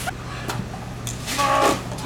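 A short vocal cry with a falling pitch, about one and a half seconds in, after a faint click.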